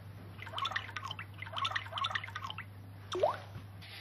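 Samsung Galaxy tablet's lock-screen water-ripple sound effect: clusters of synthetic water-drop plinks as a finger stirs the screen, then a single rising 'bloop' about three seconds in. The swipes are not unlocking the device. A low steady hum runs underneath.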